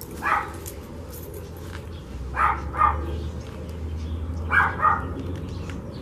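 A dog barking, with a single bark at the start and then pairs of quick barks about two and a half and four and a half seconds in, over a low steady rumble.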